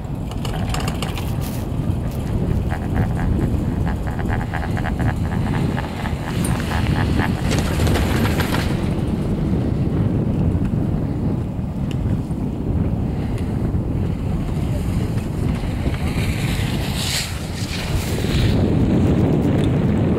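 Wind buffeting the microphone over a steady low rumble during a ride on a Garaventa CTEC high-speed quad chairlift. In the first few seconds comes a rapid run of clicks, like the chair rolling over a lift tower's sheaves.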